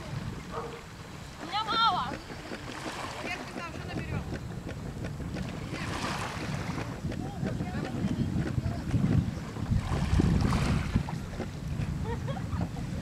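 Wind buffeting the microphone by open water: a rough, gusty rumble that grows stronger for a few seconds after the middle. A few short high calls or distant voices come through near the start.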